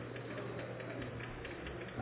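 Quiet room tone of a large hall picked up by an open microphone, with a steady low electrical hum.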